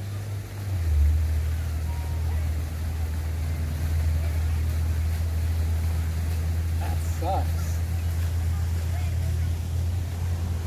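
A steady low rumble that grows louder about a second in, with a brief faint voice near seven seconds.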